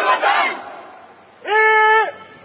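A formation of trainees shouting together in unison as a drill cry, the many voices overlapping. About a second and a half in, one loud shout is held steady for half a second.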